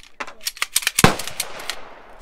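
A semi-automatic pistol being cleared by hand: a quick run of metallic clicks and clacks as the magazine is dropped and the slide is racked to empty the chamber, with one louder, sharper clack about a second in.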